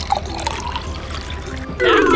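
Liquid pouring and trickling from a bottle into a car's fuel filler. Near the end a loud musical sound effect comes in.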